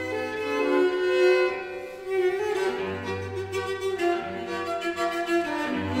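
A string trio of two violins and a cello, on gut strings, playing a late-18th-century minuet. The violins carry the melody while the cello holds long low notes beneath.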